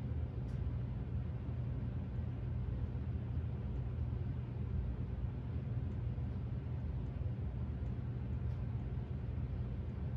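A steady low rumbling hum with no pauses or changes, with a couple of faint light ticks.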